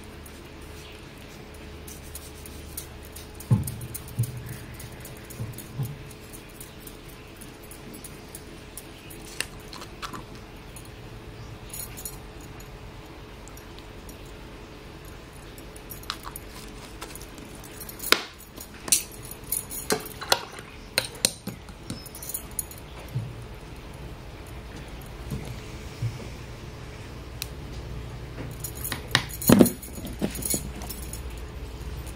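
Scattered light clinks and jangles of small glass and metal objects being handled on a tabletop: glass acrylic-ink bottles and their caps, and metal bangles on the painter's wrist. They come in short clusters, a few early, a run in the middle and more near the end, over a faint steady hum.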